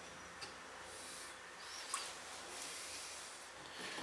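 Quiet room noise with faint handling sounds: a light click about half a second in and a soft knock near the middle, as wet slip-dipped clay mugs are set down on a wooden workbench.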